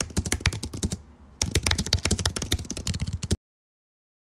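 Computer keyboard typing sound effect: rapid keystrokes in two runs, with a short pause about a second in, stopping abruptly just before the end.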